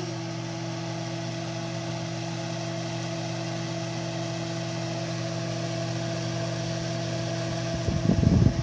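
A steady machine hum with an even hiss of moving air, holding the same level throughout.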